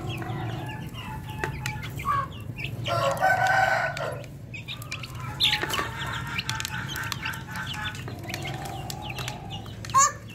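Aseel–desi mix chickens clucking, with a long crow about three seconds in and another long crowing call from about five and a half seconds, over a steady low hum.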